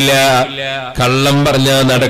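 A man's amplified voice chanting in drawn-out phrases, each note held at a steady pitch, with a brief drop in loudness about halfway through.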